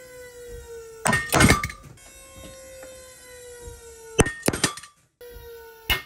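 Pull-test rig whining steadily, its pitch sagging slowly as load builds on Dyneema cord loops pulled in tension around an aluminium cave hanger, up to about 11 kN. Loud sharp cracks break in about a second in and again around four seconds in, the cord's fibres snapping and fraying against the hanger's edges.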